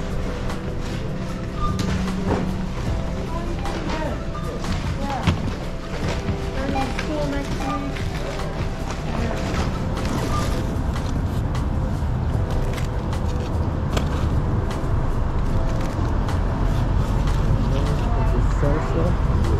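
Background music over in-store chatter, giving way in the second half to a steady low outdoor rumble of street noise.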